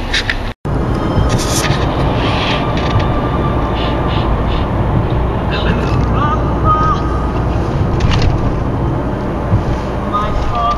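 Steady road and engine noise heard inside a moving car's cabin, with the sound cutting out completely for an instant about half a second in.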